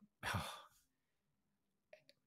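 A man sighs out a breathy "oh" lasting about half a second. A pause with almost nothing to hear follows, broken near the end by a faint mouth click.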